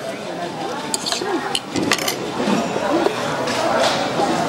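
A metal fork clinking and scraping on a ceramic plate, with a few sharp clinks between about one and two seconds in, over background chatter of voices.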